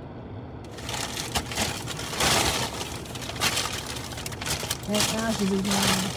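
Packing paper crinkling and rustling in uneven surges as it is pulled and unwrapped by hand, with a short vocal sound near the end.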